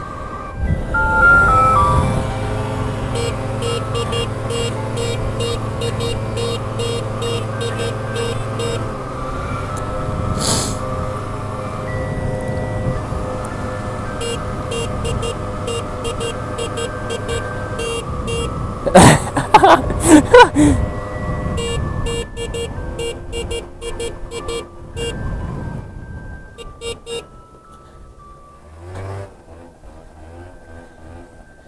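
Music with sustained tones over a steady ticking beat. About nineteen seconds in, a loud warbling sound wavers up and down for about two seconds, and the sound fades toward the end.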